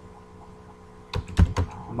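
Typing on a computer keyboard: a quick run of four or five keystrokes a little past the middle, after a quiet first second.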